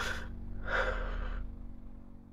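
A man crying: a sharp gasp right at the start, then a longer, louder shaky breath about half a second later, partly muffled by his hand over his mouth.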